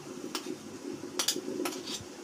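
Light, scattered clinks of stainless-steel kitchenware, about five short sharp clicks, as mini idlis are picked off a perforated steel idli mould plate and dropped onto a steel plate.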